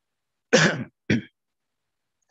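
A man clearing his throat with two short coughs about half a second apart, the first longer and harsher than the second.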